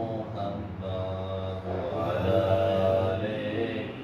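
A man chanting an Islamic devotional recitation into a handheld microphone, in two long melodic phrases with a short break about halfway.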